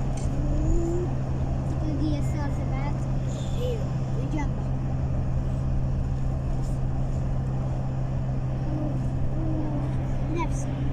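Steady engine and road drone heard from inside a moving vehicle at highway speed, with faint voices in the background.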